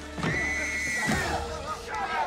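A woman's scream: one long, high cry lasting about a second, over background music.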